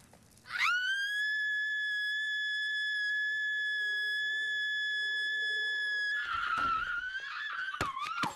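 A single long high-pitched held tone. It swoops up quickly at the start and then holds one steady note for about five seconds. Near the end it turns wavering and rough.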